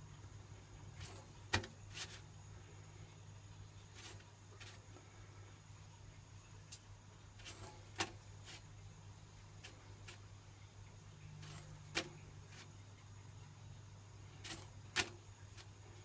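Poppadom toasting over a lit high-output gas wok burner: a steady low hum runs under about a dozen scattered sharp crackles as the poppadom crisps and chars, four of them louder than the rest.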